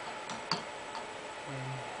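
A wooden brush handle knocking against a glass jar of brushes: one sharp click about half a second in, with a couple of lighter ticks around it.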